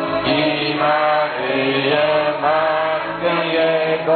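A group of voices singing a Christmas carol together in long held notes, over a steady low accompaniment.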